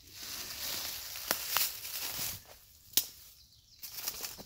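Footsteps through dry leaf litter and twigs on a forest floor: a rustling shuffle with three sharp clicks or snaps, the last and loudest about three seconds in.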